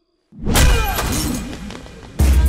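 A sudden loud shattering crash, a film fight sound effect, dying away over about a second and a half.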